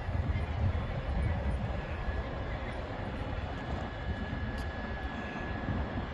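Wind buffeting the microphone outdoors: a low, uneven rumbling noise with no distinct events.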